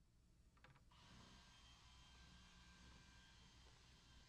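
Near silence: faint room tone, with a few faint clicks a little under a second in.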